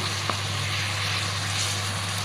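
Fish in wet chili sambal sizzling in a pan, over a steady low hum, with one light tap of the spatula just after the start.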